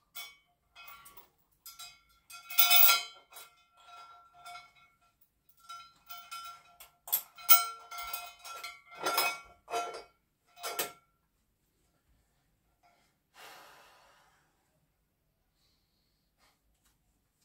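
Metal dip-belt chain clinking and rattling against a 20 kg weight plate as it is threaded through the plate's hole and clipped on, a dozen or so sharp clinks with a short metallic ring. A short soft hiss follows near the end.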